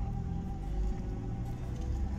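Low, steady rumble of a car's engine and tyres heard from inside the moving car, with faint music playing over it.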